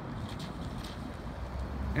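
Outdoor street ambience: a steady low rumble with no distinct events, swelling slightly near the end.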